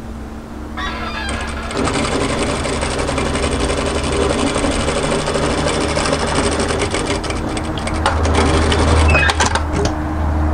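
Industrial single-needle lockstitch sewing machine stitching a side seam. It starts about a second in, runs steadily, gets louder near the end and stops just before the end, over a low steady motor hum.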